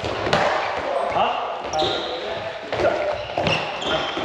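Handballs being thrown, striking and bouncing on a wooden sports-hall floor: several sharp impacts about a second apart, echoing in the hall, with short high squeaks between them.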